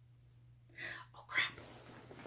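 A woman whispering: two short breathy bursts about a second in, over a faint steady hum.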